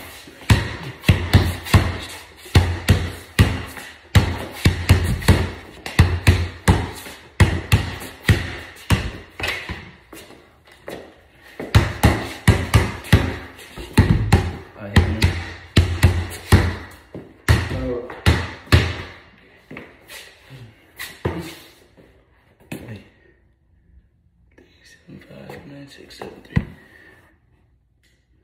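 Basketball dribbled on a garage's concrete floor: a quick, steady run of bounces, about two to three a second, that thins out and stops about 22 seconds in.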